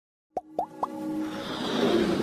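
Intro sound effects: three quick plops, each rising in pitch, then a music swell that builds in loudness.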